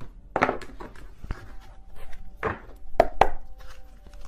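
Tarot cards being handled at a table: a series of sharp taps and knocks, about six, spread irregularly.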